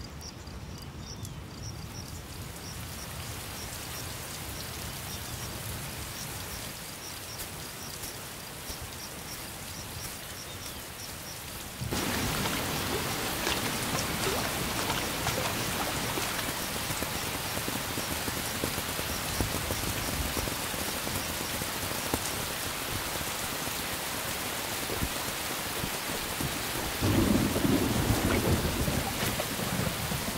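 Thunderstorm: insects chirp in a quick regular rhythm over a low rumble. About twelve seconds in, heavy rain starts abruptly and pours steadily, and a louder rumble of thunder comes near the end.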